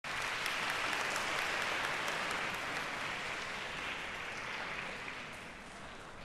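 Concert-hall audience applauding, a dense patter of clapping that thins and fades away over the last few seconds.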